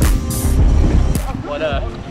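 Background music with a heavy bass beat and a voice over it.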